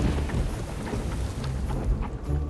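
Storm sound effect: a thunderclap right at the start, rumbling on over the steady noise of heavy rain.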